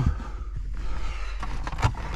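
Handling noise of an Xbox console and its cables being moved about: soft rustling and scraping with a short knock near the end, over a steady low hum.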